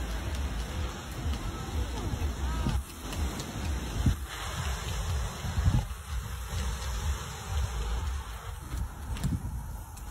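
Sea breeze buffeting the phone's microphone in uneven gusts of low rumble, over a steady hiss from the surf and the seafront.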